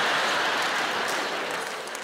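Audience applause, a dense patter of clapping that dies away toward the end.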